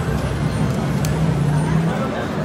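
Double Diamond Respin slot machine spinning its outer reels on a respin, a steady hum over casino background noise, with one sharp click about a second in.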